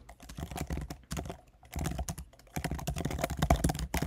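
Typing on a computer keyboard: a quick run of key clicks with short pauses between bursts.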